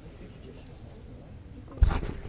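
Murmur of many voices outdoors, then near the end a sudden loud thump and rumble as the ground-level action camera is grabbed and moved.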